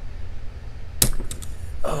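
The retaining clip on the back of a brass Arrow lock cylinder's plug popping off under the tips of pliers: one sharp metallic click about a second in, followed by a couple of fainter ticks.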